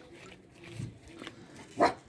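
Faint rustling as items are rummaged about in a leather tinder pouch, then a brief loud vocal noise near the end, like a grunt or sniff.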